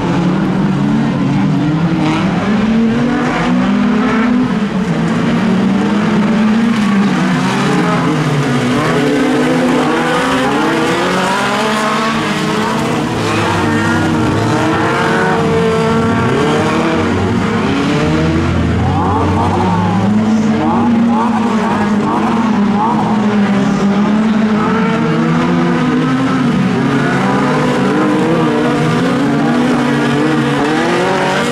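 Several stock cars racing on a dirt track, their engines revving up and falling back over and over as they accelerate and lift through the bends. Around two-thirds of the way in, one car is revved hard in quick bursts, rising sharply each time.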